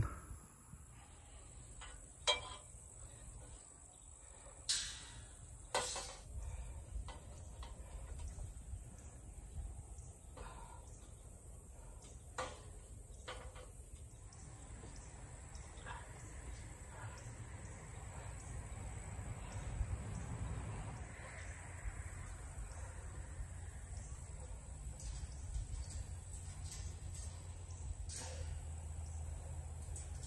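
A few sharp metal clicks and knocks, spread out and loudest in the first half, as a steel sign is hooked onto carabiners on eye bolts. Under them a faint steady high hum and a low rumble that grows toward the end.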